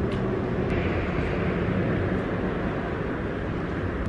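Steady low rumble of outdoor background noise with a faint hum under it.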